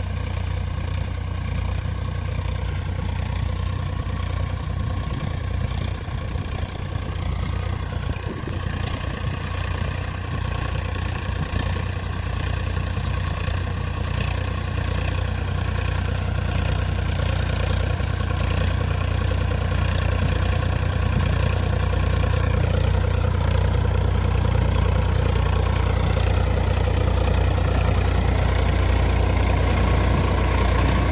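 Swaraj 744FE tractor's three-cylinder diesel engine running steadily under load as it drives a 42-blade gear rotavator through dry soil. The sound grows gradually louder as the tractor draws near.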